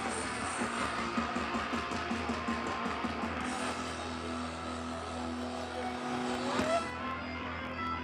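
Live hardcore punk band music heard from within the crowd: a loud, dense, distorted wash of guitars and crowd noise. About six and a half seconds in, a short rising squeal sounds, and then the sound thins out as guitar strumming comes through.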